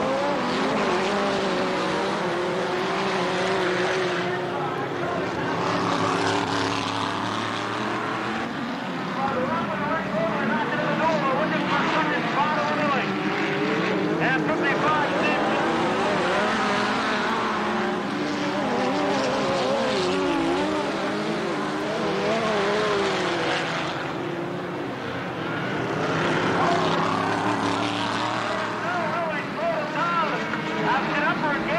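Several midget race cars running at speed on a short oval, their engines' pitch wavering as they lift and accelerate through the turns, the sound swelling and easing every several seconds as the pack comes past.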